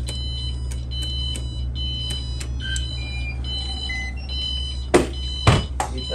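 High electronic alarm beeps from the motor yacht's helm instruments and panel as its systems are switched on, several tones of different pitch starting and stopping, over a steady low machinery hum. Two sharp knocks come near the end.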